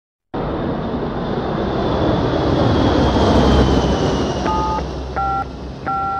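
Jet aircraft engine noise, a steady rush with a high whine slowly falling in pitch. Near the end, three telephone keypad tones are dialed, each a short two-note beep.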